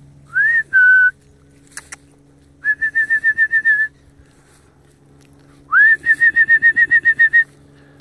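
A whistled recall signal to dogs. It opens with a rising note and a short held note, then comes a run of quick repeated pips at the same pitch, about nine a second, and a second rising note leads into another run of pips.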